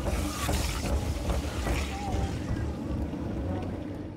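Roller coaster ride heard from an on-ride camera: wind rushing over the microphone over a steady low rumble of the train on its track.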